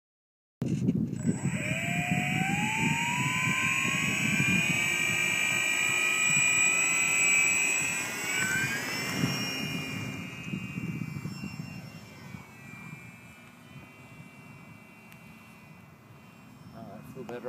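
Parkzone F4U-1A Corsair RC plane's electric motor and propeller whining, starting suddenly about half a second in and climbing in pitch as the throttle opens for a take-off from grass, over a low rumble. The pitch rises again just past halfway as it takes off, then the whine fades away as the plane climbs out.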